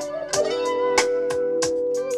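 Electric guitar played live over a programmed smooth-jazz groove, with a long held melody note and sharp drum hits about three times a second.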